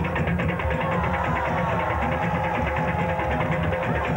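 West African drum ensemble playing a fast, steady dance rhythm, with higher tones sliding up and down over the drumming.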